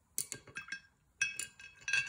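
Two short runs of light clinks, the later ones ringing briefly, as paintbrushes are put down and picked up during a change of brush.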